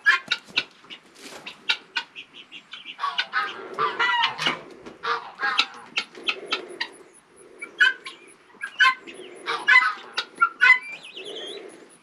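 A mixed flock of chickens and guinea fowl clucking and calling in many short, sharp calls while they feed on scattered treats.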